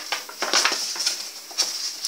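Paper rustling and crinkling with a few light clicks, as a handmade paper envelope is opened and the letter inside is handled.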